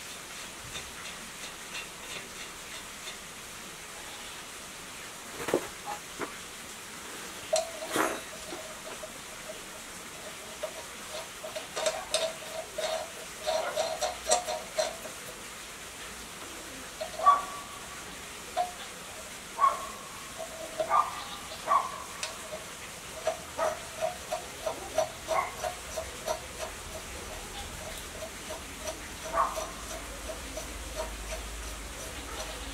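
Hand assembly of metal parts on a single-cylinder 1115 diesel engine block: scattered sharp metal clicks and clinks, then quick series of short, squeaky ticks, about two or three a second, as parts are worked and tightened.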